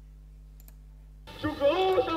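A faint mouse click, then a little over a second in the audio of the video starts suddenly: a man's raised, declaiming voice from an old speech recording.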